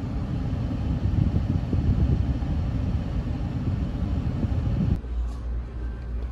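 Low, uneven rumble of a car heard from inside the cabin. It cuts off abruptly about five seconds in, giving way to a quieter indoor room tone with a steady low hum.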